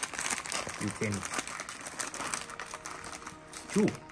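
A plastic candy bag crinkling and rustling as it is handled, a dense crackle of many small clicks that thins out over the last second or so.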